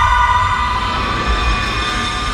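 Trailer sound design: a held drone of several steady high tones over a low rumble, slowly fading.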